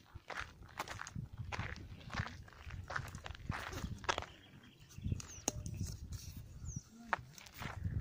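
Footsteps crunching on a gravel-strewn paved surface as a person walks, in a series of short, irregular steps.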